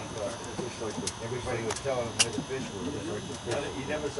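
Quiet, indistinct talk throughout, with two sharp clicks about one and two seconds in.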